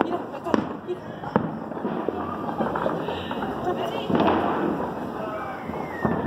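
New Year's fireworks and firecrackers going off around the neighbourhood: scattered sharp bangs and pops over a continuous background of distant explosions.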